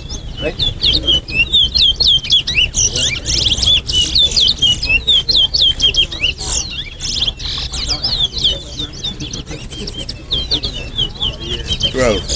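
Caged male towa-towas (chestnut-bellied seed finches) singing in a bird singing race, where each completed song is counted toward the win. The song is a fast run of quick sliding whistled notes, dense in the first half and thinning somewhat later on. A crowd murmurs underneath.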